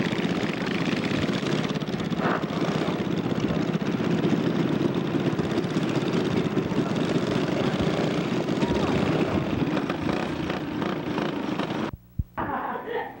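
Small go-kart engine running steadily, a loud drone with a fast, even pulse. It cuts off abruptly near the end.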